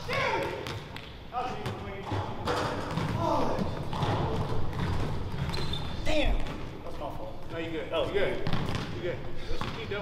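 A basketball being dribbled on a hardwood gym court, its bounces mixed with players' voices in the gym.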